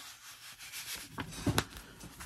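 An old paper report card sliding into a manila paper envelope, paper rubbing on paper, with a couple of light taps about a second and a half in as the envelopes are handled on the table.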